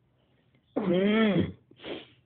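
A man's drawn-out, breathy voiced sound whose pitch rises and then falls, lasting under a second, followed by a short breath near the end.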